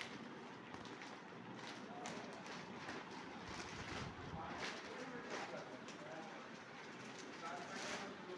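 Faint background voices over quiet room noise.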